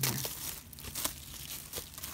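Clear plastic shrink wrap crinkling as it is pulled off a Blu-ray box, with several sharp crackles at irregular moments.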